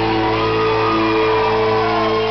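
A live rock band holds a sustained chord, the electric guitar ringing on steady notes, while voices shout over it.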